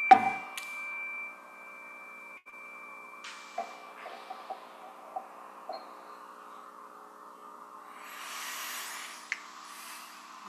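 A small bell or chime struck once with a mallet, a high ringing tone fading away over about four seconds with a lower hum lingering beneath it. A few light clicks follow, and a soft rustle near the end.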